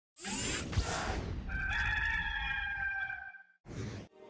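A rushing whoosh, then a rooster crowing once, one long call, followed by another brief whoosh near the end.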